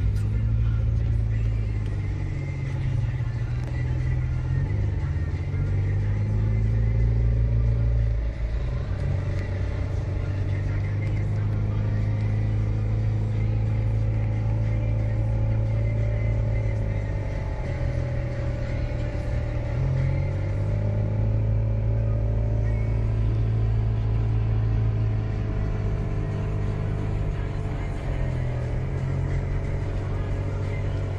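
Car engine and road rumble heard from inside the cabin while driving in city traffic, the engine note rising and falling slowly as the car speeds up and slows.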